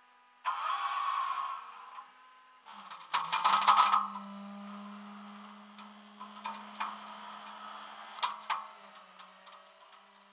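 Metal clanking and rattling of tie-down hardware as a pickup is secured at its front wheel on a flatbed tow truck: a loud rattling burst about three seconds in, then scattered sharp clicks and knocks over a steady low hum.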